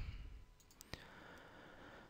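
A single sharp click about a second in, from a computer mouse clicked to advance a presentation slide, over faint room hiss.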